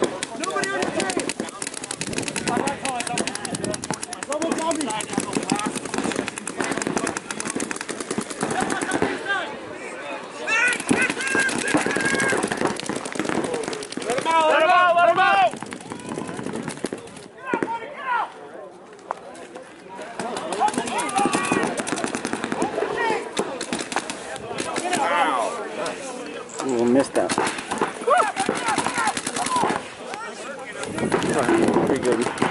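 Paintball markers firing in fast, continuous strings of shots, thinning briefly a little past the middle, with players shouting over the shooting.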